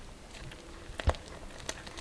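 A spatula stirring flour and wet ingredients into a rough bread dough in a glass bowl: faint scraping with a few light clicks of the utensil against the glass.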